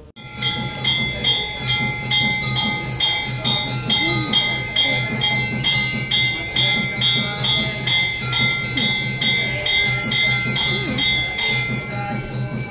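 Temple bells ringing during a Hindu puja, struck in a fast, even rhythm of about two strokes a second over a sustained ringing tone.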